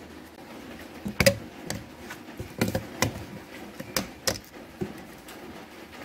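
Scattered short plastic clicks and taps, about eight over a few seconds, the sharpest a little over a second in: hands working the wiring connectors and plastic clips inside a 2019 Kia Optima door.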